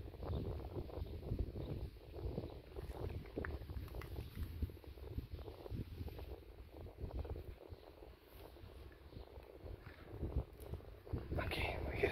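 Cats crunching dry kibble: many small irregular crunches and ticks over an uneven low wind rumble on the microphone, with a brief louder burst near the end.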